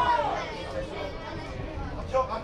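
Shouts and chatter of spectators and players at a football match, with one voice's call falling away at the very start.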